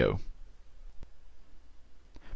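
A single sharp computer click about a second in, against faint room tone, after the end of a spoken word.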